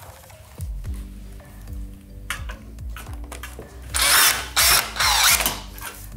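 A cordless DeWalt screw gun spins up and runs steadily, then gets loud for the last two seconds as it drives an ultra-low-profile gimlet-point screw through a metal roof panel's nail-flange slot into plywood.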